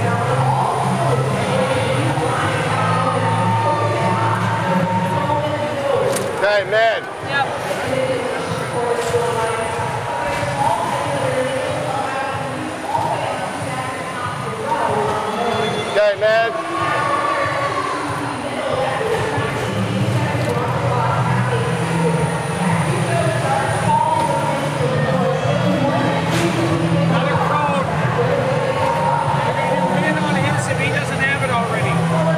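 Loud, steady din of a crowded robotics competition arena during a match: many overlapping voices and crowd noise, with two louder bursts, one a few seconds in and one around the middle.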